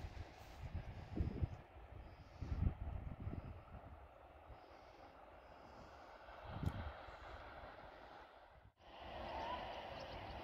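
Wind buffeting the microphone in low, uneven gusts, a few of them stronger in the first seven seconds. Near the end the sound cuts abruptly to a steadier hiss.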